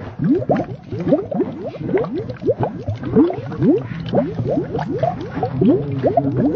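A cartoon mouse's dialogue, slowed down and run through a watery audio effect so that it comes out as a quick stream of rising bloops and gurgles, several a second, with no intelligible words.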